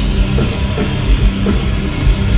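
Rock band playing live at full volume, the drum kit beating a steady, driving rhythm.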